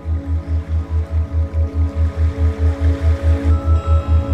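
New-age meditation background music: a low bass tone pulsing evenly about five times a second under sustained held chords. A higher held note comes in near the end.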